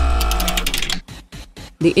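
Segment-transition sound effect: a low boom under a held chord-like tone with rapid mechanical clicking, fading out about a second in and leaving a few faint clicks.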